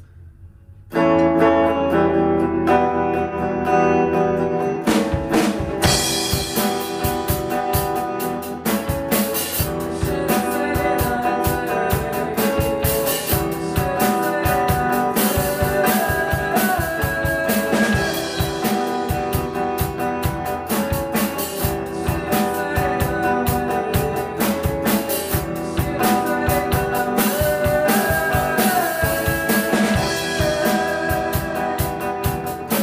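Electric guitar and drum kit playing a song live. The guitar starts alone about a second in, and the drums come in about four seconds later.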